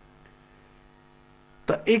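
Faint steady electrical hum made of a few level tones on the microphone feed. A man's voice starts again near the end.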